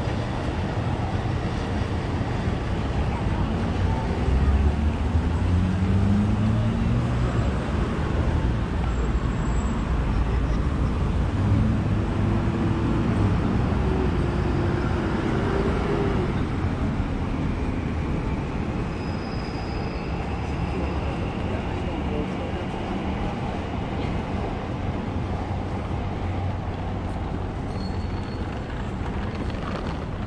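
City street traffic: vehicle engines and tyres running by, with a low rumble that is loudest in the first half and an engine's pitch rising and falling.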